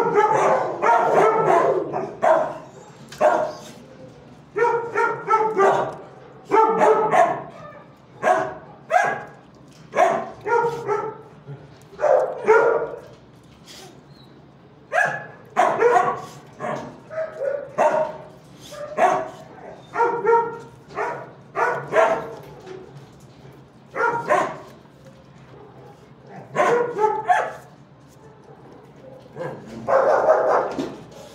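Dogs barking in a shelter kennel: loud, short barks, often in pairs or runs, about one or two a second, with a couple of brief lulls.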